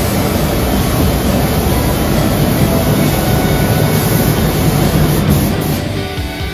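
Steady rushing air of a paint spray booth's airflow and a spray gun hissing as a very thin drop coat of clear is sprayed onto the car body.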